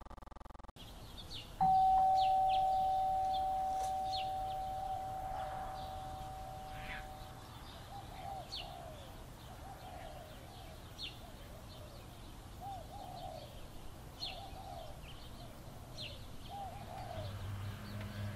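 A doorbell chime rings once with two notes, a higher then a lower, both fading slowly over several seconds. Birds chirp throughout, and a repeated lower bird call follows the chime.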